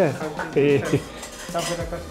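Cutlery and dishes clinking in a restaurant, with short snatches of voices between the clinks.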